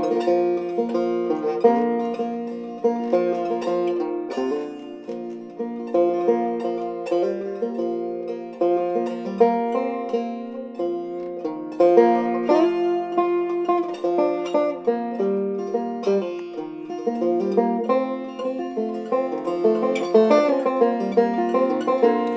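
Resonator banjo played solo: an instrumental break of quickly picked notes, with no singing over it.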